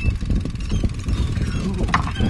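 Steady low rumble of a fishing boat at sea, with a sharp knock near the end.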